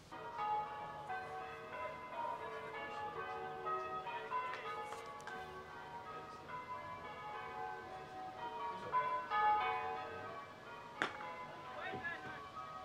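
Church bells change ringing: a continual run of bell strokes at different pitches, each ringing on into the next. A single sharp knock near the end.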